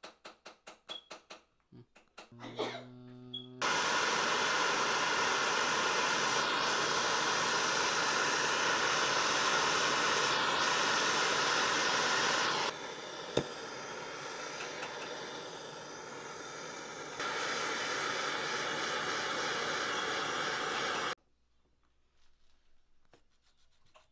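Gas torch flame hissing steadily as it heats a pure gold tube bangle on a soldering block. The hiss drops quieter for a few seconds in the middle, comes back, then cuts off suddenly. Faint quick strokes of a small hand file on the gold come before and after the flame, and a brief low hum comes just before it starts.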